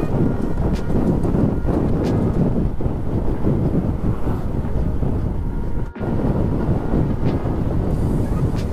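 Wind rushing over the microphone mixed with a motorcycle's engine and road noise while riding along at speed. The sound drops out sharply for a moment about six seconds in.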